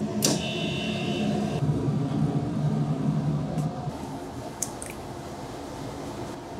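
Steel ladle striking and scraping inside a stainless steel tank of cold naengmyeon broth while scooping out broth. It starts with a sharp metallic clank about a quarter second in, followed by a high ringing scrape for about a second. A low steady hum runs underneath and drops away about four seconds in.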